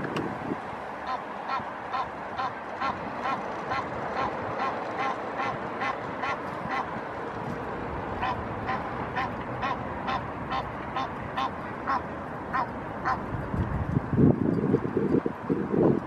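Adult Egyptian goose honking in a long series of short, evenly spaced calls, about two a second, with a brief pause midway. Near the end a loud low rumble takes over.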